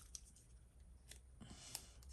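Near silence: room tone with a few faint ticks of a small paper cutout being handled between fingers.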